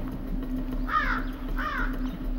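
A bird calling twice, two short harsh calls a little under a second apart, over a low steady hum.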